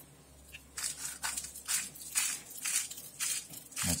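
A hand-twisted pepper mill loaded with peppercorns, chili and sea salt grinding in short crunching strokes, about two a second, starting about a second in.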